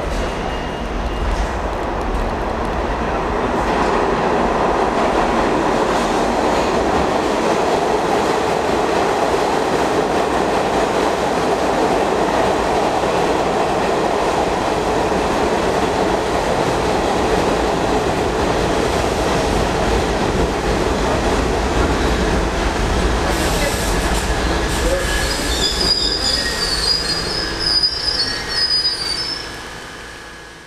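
A subway train running past through the station on a far track, with a steady rumble of wheels on rails. A high wheel squeal comes in about 24 seconds in and lasts until shortly before the rumble fades away at the end.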